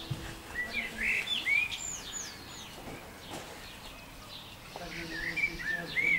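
Songbird singing: two phrases of quick, varied chirps and whistles that sweep up and down, one starting about half a second in and another near the end.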